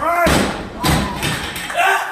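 A 120 kg barbell with rubber bumper plates dropped from overhead onto a lifting platform: a loud thud about a quarter second in, and a second impact just under a second in as it bounces. Voices call out around it at the start and near the end.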